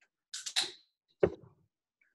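A beer can cracked open: a pop of the tab and a short fizzing hiss lasting about half a second, followed by a single sharp knock a little over a second in.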